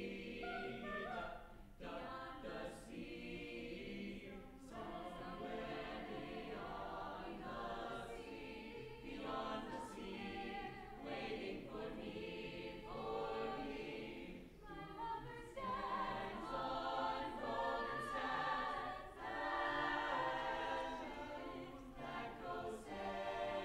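High school choir singing in harmony, phrase after phrase with short breaks between them.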